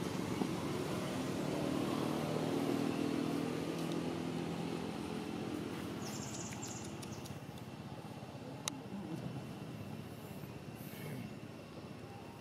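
A motor vehicle's engine hum that swells over the first few seconds and fades away by about halfway through, as if passing at a distance. A single sharp click comes later.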